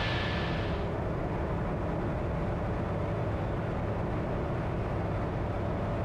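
Steady drone of a Comco Ikarus C42C ultralight's engine and propeller in level cruise, heard from inside the cabin.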